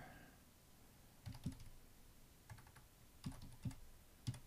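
Faint typing on a computer keyboard: about seven quick keystrokes in short pairs, starting about a second in.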